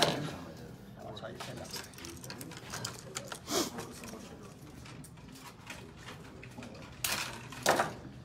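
Hand tools and small electrical parts clicking and clattering on a worktable as they are handled quickly, with a louder clatter about seven seconds in.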